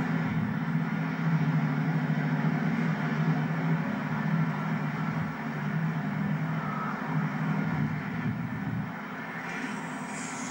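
A Thames Turbo diesel multiple unit running past on the far track: a steady drone from its underfloor diesel engines with rail noise, easing off near the end as it draws away.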